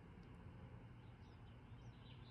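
Near silence: faint outdoor background with a couple of faint bird chirps.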